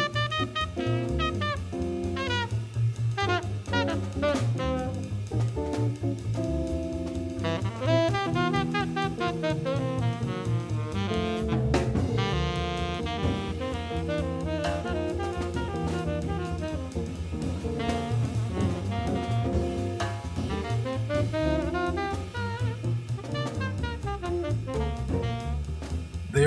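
Live jazz quintet playing: a tenor saxophone carries the melody over piano, electric guitar, double bass and drum kit.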